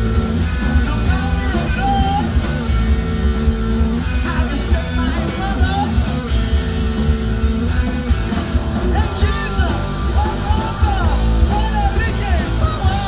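Live rock band playing a song: electric guitar, bass and drums, with a bending lead melody over a steady heavy low end.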